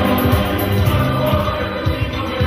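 Church choir of men and women singing together.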